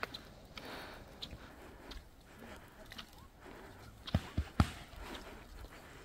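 Faint footsteps on an asphalt road, with three sharp clicks close together about four seconds in.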